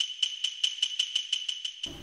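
Small jingling percussion shaken in a quick, even beat of about eight strokes a second, over a held ringing tone. It stops just before the end.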